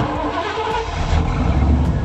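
Sound effect of a septic-tank tanker truck's engine, cutting in suddenly and running with a heavy low rumble that swells about a second in.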